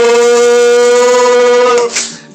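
A man singing one long, high note, held steady and then cut off near the end.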